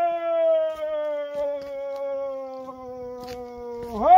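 Dog howling: one long, smooth, drawn-out howl that slowly falls in pitch, with the next howl starting right at the end.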